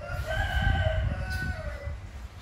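A rooster crowing once: one long call lasting nearly two seconds, dropping in pitch at the end.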